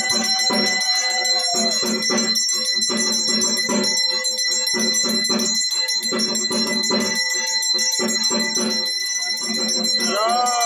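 Brass hand bell (ghanta) rung continuously during the aarti, with a steady beat of percussion about twice a second. A long smooth tone rises and falls in the first two seconds.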